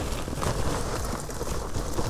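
Fresh lump charcoal pouring from its bag into the firebox of a Big Green Egg ceramic kamado grill, the lumps clattering onto the used charcoal in a continuous rattle of many small clinks.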